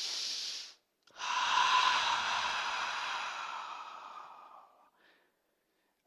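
A man demonstrating a yoga breathing exercise: a short, sharp inhale through the nose, then about a second in a long exhale through the open mouth that fades away over about four seconds.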